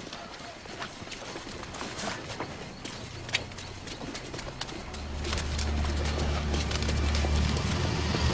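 Scattered footsteps and small knocks of people walking in the dark, with a low steady hum coming in about five seconds in and growing louder.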